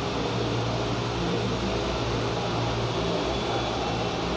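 Steady room noise: a low, even hum with a constant hiss, unchanging throughout.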